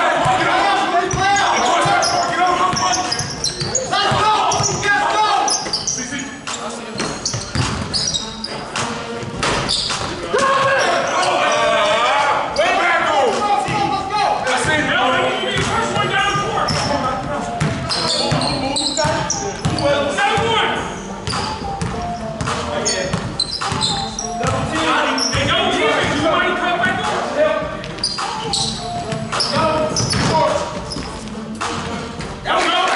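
Basketball being dribbled on a hardwood gym floor during play, with repeated short bounces in a large, echoing gymnasium, over players' voices.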